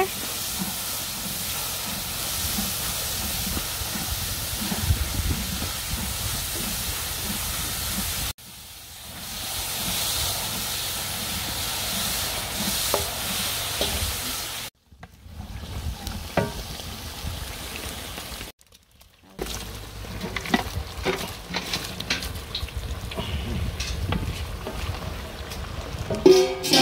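Sliced onions frying in hot oil in a large cast-iron pot, a steady sizzle, while a wooden paddle stirs them. The sizzle drops out briefly twice in the second half.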